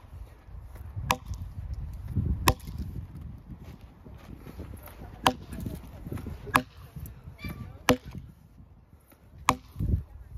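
Axe chopping crosswise through a log to buck it: six sharp strikes of the head biting into the wood, about one every second or two, with a longer pause after the second.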